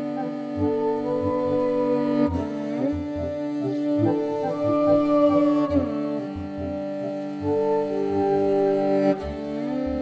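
Music led by a bowed morin khuur (Mongolian horsehead fiddle): a steady low drone with sliding melody notes above it, over a low pulsing beat.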